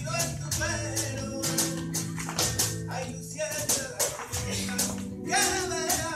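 Flamenco music: a sung line over Spanish guitar, punctuated by frequent sharp strikes from the dancers' footwork and handclaps.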